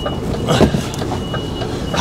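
HGV diesel engine idling, heard from inside the cab, with a few short switch clicks and a brief rustle about half a second in.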